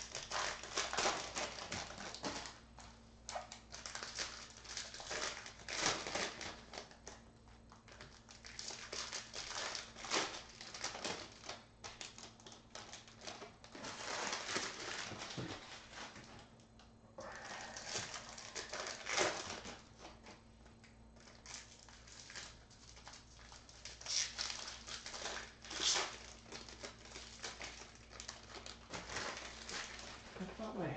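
Foil wrappers of Topps Chrome baseball card packs crinkling and tearing as the packs are opened, with the cards sliding and tapping as they are handled and stacked, in irregular bursts of rustling.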